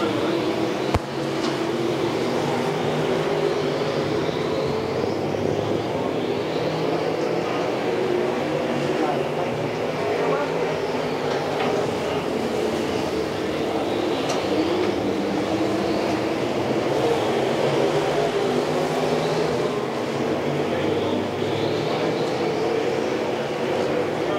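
A pack of dirt-track modified street cars racing on a clay oval. Their engines run in a continuous loud drone that swells and fades every few seconds as cars pass. There is one sharp click about a second in.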